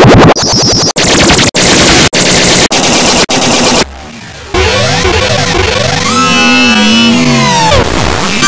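Heavily distorted, clipped music run through audio effects. For about four seconds it comes as harsh, noisy blasts chopped by short gaps about every half second. After a brief drop in level, it turns into warped music with sliding, bending pitches.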